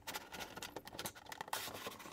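Faint scraping and rubbing as a plastic storage-bin reservoir is slid out from a cabinet shelf, with many small irregular clicks.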